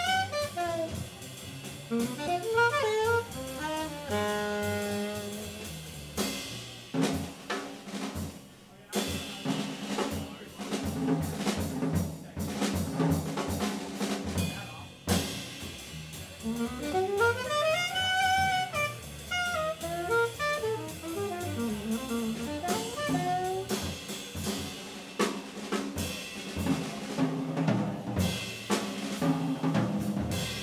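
Live jazz trio: a saxophone playing melodic phrases over walking upright bass and a drum kit with busy cymbal and drum strokes.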